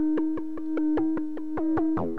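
Buchla 200e modular synthesizer playing an FM patch built from two sine oscillators: a quick run of short notes, several a second, over a steady held tone. Each note's overtones dip in pitch as it starts, and the level swells and fades about once a second.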